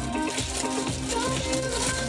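Pop song playing.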